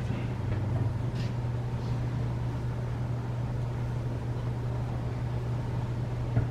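Steady low hum of room noise, with a couple of faint clicks a second or two in.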